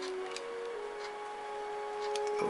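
Soft background music of long held notes that step to a new pitch twice, with a few faint clicks from small plastic parts being handled.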